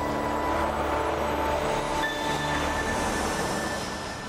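Animated cooking-show intro jingle: steady music tones under a sustained rushing whoosh sound effect that builds in the second half.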